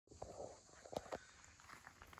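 Faint footsteps on gravel: a few soft crunches and clicks over a quiet background.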